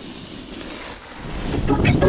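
Wind buffeting an action camera's microphone as a snowboard runs downhill over snow, growing louder about a second in.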